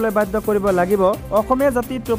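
A voice speaking continuously over background music.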